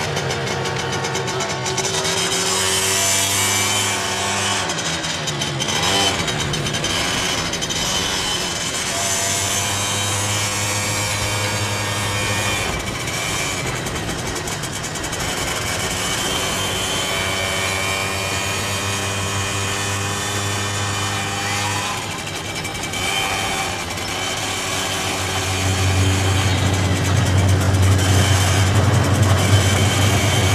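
Small motorcycle engine running under way with two riders aboard, its pitch dipping and climbing again twice. It grows louder over the last few seconds.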